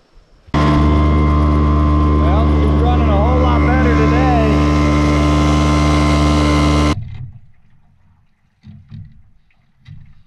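Small outboard motor on an inflatable boat running steadily at speed, very loud and close; a voice calls out over it partway through. The motor starts abruptly about half a second in and cuts off suddenly about seven seconds in.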